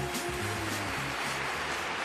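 A pop song with band backing: a female singer's held note trails off about half a second in while the bass line and the band carry on, the music slowly fading.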